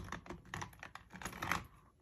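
A run of light, irregular clicks and taps from a hand on a planner binder on a desk, several a second with short pauses between them.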